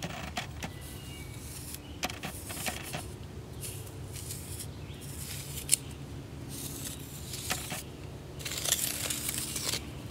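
A stick scratching and scraping through dry, gritty dirt in short intermittent strokes as circles are drawn on the ground.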